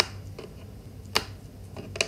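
Small hard plastic gingerbread-man counters clicking as they are set down on a card and picked from a pile: a sharp click at the start, a louder one just over a second in, and a few fainter taps.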